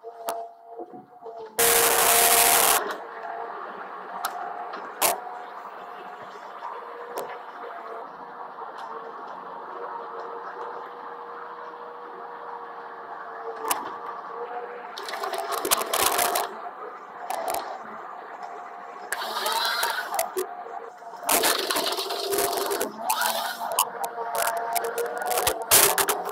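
Komatsu 931.1 tree harvester at work: the machine's steady drone with cracks and snaps of timber, and loud bursts of noise as the harvester head grips and cuts trees. The loudest burst comes about two seconds in, with further rough, loud stretches near the end.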